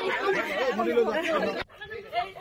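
Speech only: people talking. The talk starts abruptly, breaks off sharply about one and a half seconds in, and quieter talk follows.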